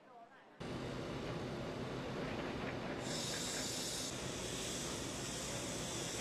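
Steady machinery hum under a broad hiss from the sinkhole repair site, where an excavator is working. It starts abruptly about half a second in, and the hiss turns brighter about three seconds in.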